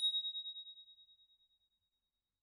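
A single high, clear ding sound effect ringing out on one tone and fading away over about a second and a half, then dead silence.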